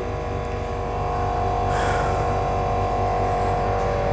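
A steady electrical hum and buzz with several fixed tones, plus a brief hiss about two seconds in.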